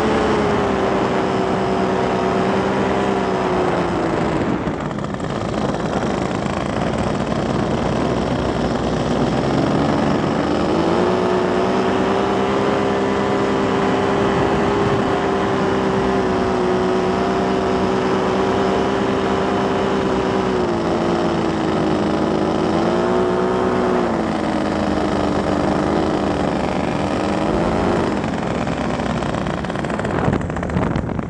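Paramotor engine and propeller running in flight. The pitch drops as the throttle is eased about four seconds in, climbs back and holds steady from about eleven seconds, then dips and rises several times in the last ten seconds as the throttle is worked for the approach to land.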